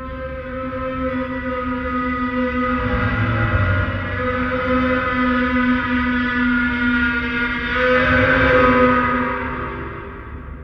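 Dark-ambient drone made from an electronically processed gong: a sustained chord of steady overtones over a low rumble. It swells, is loudest about eight to nine seconds in, then fades.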